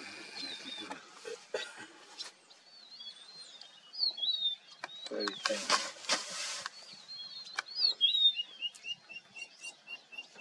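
Wild birds singing in grassland: a song of wavering, warbled high notes, then a run of short repeated chirps at about three a second near the end.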